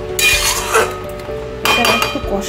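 Metal spatula scraping and clinking against a metal kadai while stirring a thick vegetable curry, in two bouts, the first early in the first second and the second near the end. Steady background music plays underneath.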